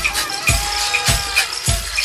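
Background music with a steady drum beat, a little under two beats a second, over sustained tones and high ticking percussion.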